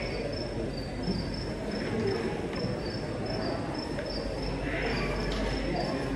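Faint, high-pitched chirping that repeats a little more than twice a second, alternating slightly in pitch, over a steady low murmur of hall noise.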